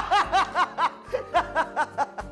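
Men laughing heartily, a rapid run of short "ha-ha" bursts that breaks off briefly about a second in and starts again. Background music with a steady bass runs underneath.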